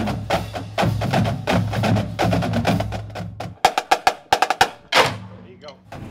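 Marching drumline of snare drums and bass drums playing together for the first few seconds. After that comes a run of sharp, separate snare strokes, then one loud hit about five seconds in.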